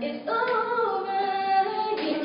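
Girls singing a cappella, no instruments, holding long sustained notes after a brief break about a quarter second in.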